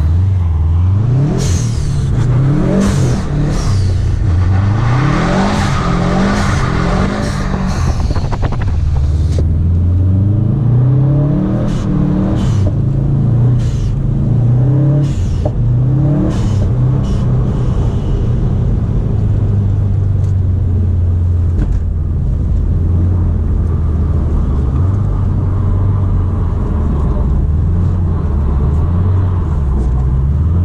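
Car engine revving hard and falling back again and again while drifting on ice, the pitch climbing and dropping with throttle and gear changes, with short sharp sounds between the revs. From about ten seconds in it is a Subaru WRX STI's turbocharged flat-four heard from inside the cabin.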